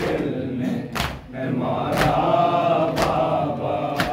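A group of men chanting a noha (Shia lament) together, with a sharp unison slap of hands on bare chests (matam) about once a second keeping the beat.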